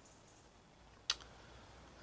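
Quiet room tone with a single sharp click about a second in.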